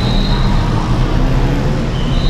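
Busy city street traffic: a dense, steady mix of bus, car and motorcycle engines, with a short high tone near the start.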